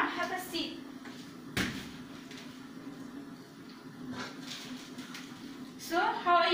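A single sharp knock about a second and a half in, over a steady low hum, with a few faint light knocks later on.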